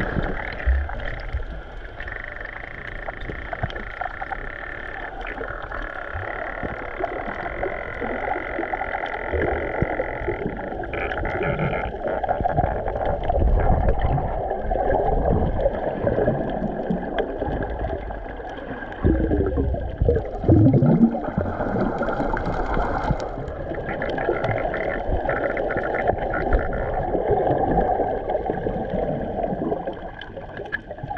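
Muffled underwater noise picked up by a submerged camera: water rushing and bubbling continuously, with a few low gurgling glides about two-thirds of the way through.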